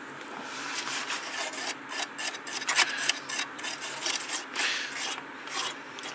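A toothbrush scrubbing the solder side of a printed circuit board, making repeated, uneven scratching strokes.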